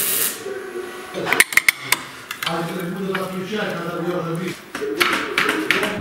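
MIG welder arc hissing and crackling at the start, the hiss fading about a second in. Metal clicks and knocks follow, with a steady humming tone in the middle and more knocks near the end.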